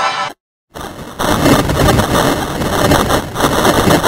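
A brassy musical sting cuts off sharply, and after a brief silence a harsh, distorted, rumbling noise begins just under a second in and carries on loudly: logo theme audio mangled by digital editing effects.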